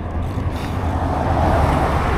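A pickup truck overtaking close by, its tyre and road noise swelling and peaking near the end, over a steady low rumble.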